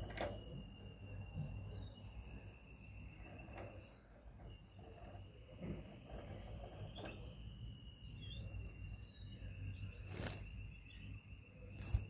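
Caged European goldfinches: faint, short high chirps and a few sharp clicks, over a steady high-pitched tone that breaks off every few seconds and a low hum.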